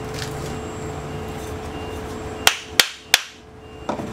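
Three sharp wooden knocks, a fraction of a second apart, from the parts of a wooden mallet being knocked together, over a steady background hum that drops away after the last knock.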